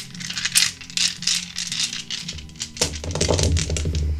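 Small hard objects being shaken or tumbled, a dense run of quick clicking rattles that thins out in the last second, over soft background music.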